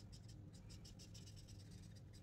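Faint scratching of a broad-tipped black marker on paper in rapid, short, repeated strokes as shading is filled in.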